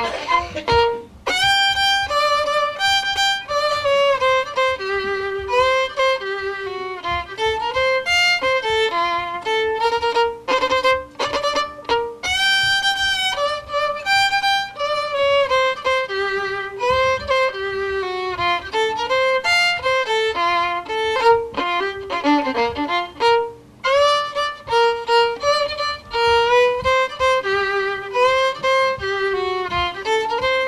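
Fiddle playing an Alabama rag tune with Cajun roots and syncopated rhythm, a single bowed melody line of quick, short notes.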